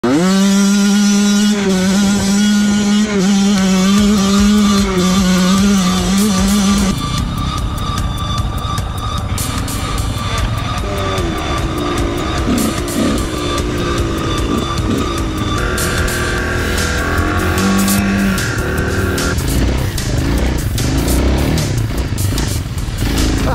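Off-road motorcycle engine running loud, rising in pitch at the start and held steady for several seconds. The sound changes abruptly about seven seconds in, after which the engine note rises and falls. Music is mixed in.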